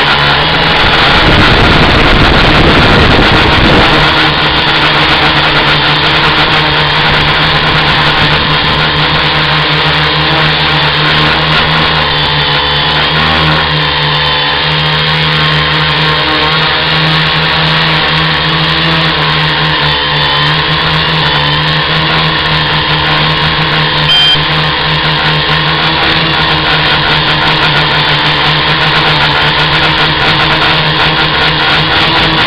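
Tricopter's three electric motors and propellers running in flight, a steady whine heard through the on-board camera's microphone. A louder low rushing noise is laid over it for the first four seconds.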